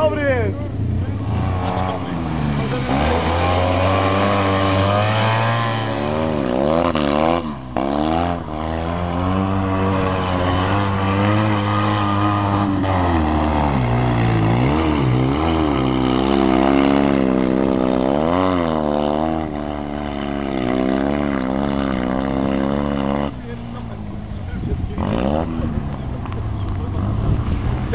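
Rally car engines revving up and down hard through the gears on a loose dirt and sand course, the pitch rising and falling again and again. The sound breaks off briefly about seven seconds in and drops lower near the end.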